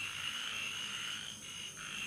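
Steady night chorus of calling frogs and insects, heard as a continuous high-pitched drone that dips slightly in level about a second and a half in.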